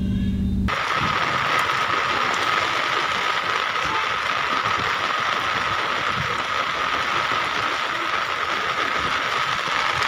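Steady, even rushing noise of rain and floodwater in a flooded road underpass, with a faint steady tone running through it.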